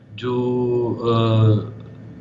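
A man's voice holding one long, drawn-out syllable at a steady pitch for about a second and a half: a hesitation in the middle of speech.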